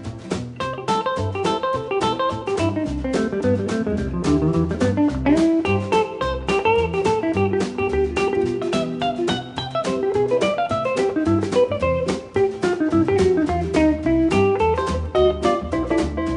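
Country band instrumental break with no singing: a guitar picks a quick single-note lead over strummed acoustic guitar, upright bass and drums.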